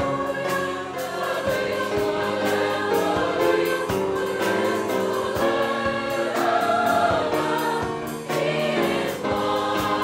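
Mixed high school choir singing in several parts, with a steady beat of sharp strokes running under the voices.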